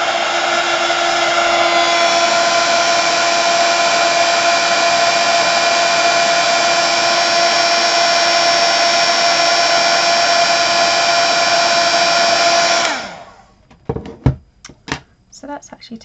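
Craft heat-embossing gun running steadily, a fan blowing with a steady motor whine, melting embossing powder. It is switched off about 13 seconds in and cuts off sharply, followed by a few light knocks.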